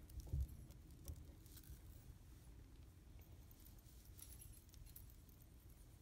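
Near silence with faint clinks of a thin metal jewelry chain and clasp being handled in the fingers, a few soft ticks near the start and again about four seconds in.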